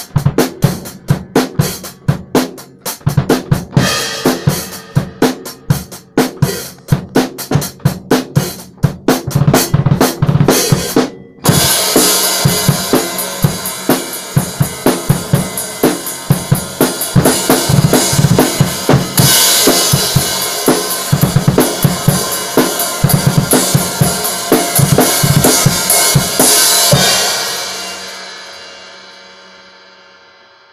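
Acoustic drum kit played fast: rapid strikes on drums and cymbals, a brief break about eleven seconds in, then cymbals crashing continuously over the drums. The playing stops about three seconds before the end and the cymbals ring out and fade.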